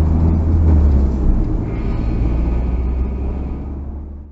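Steady low rumble of a car being driven, heard inside the cabin: engine and road noise, easing off slightly toward the end.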